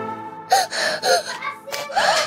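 Background music fades out, then an upset child gives a series of short gasping, whimpering breaths.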